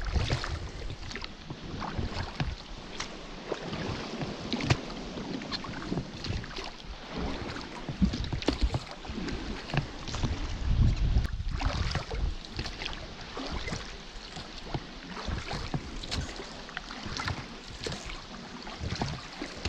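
Water lapping and splashing in small irregular bursts against the hull of an inflatable rubber dinghy. Wind buffets the microphone in low rumbles near the start and again about two-thirds of the way through.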